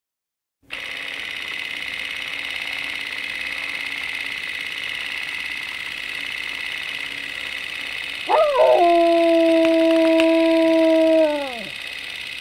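A dog howls once, starting about eight seconds in. There is a brief rise, then one long steady note for about three seconds, then a falling tail. Before the howl, after a short silence at the start, a steady high-pitched hiss runs underneath.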